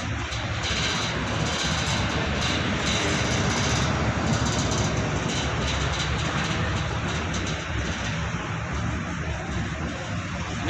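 Steady whir and low hum of large air-conditioner blower units running.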